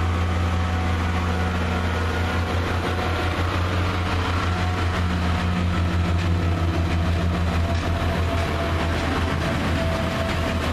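Northern Rail diesel multiple unit's underfloor diesel engine running at a steady idle: a deep, unchanging hum.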